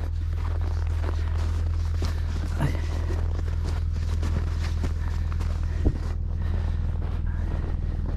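An SUV engine running steadily with a low, even hum, and a single sharp click about six seconds in.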